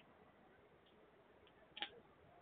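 Near silence with a few faint, sharp clicks: one at the start, a couple of fainter ones in the middle, and a short double click, the loudest, near the end.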